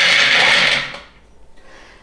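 Skinned hazelnuts poured from a glass bowl into a plastic food processor bowl: a dense rattle of many small hard nuts that dies away about a second in.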